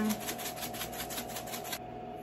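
Dried seasoning rattling in a shaker bottle as it is shaken rapidly over a casserole dish, about eight shakes a second, stopping shortly before the end, over a faint steady hum.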